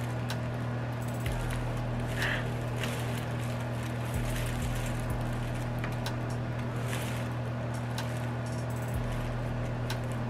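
A steady low hum, with a few faint clicks scattered through it.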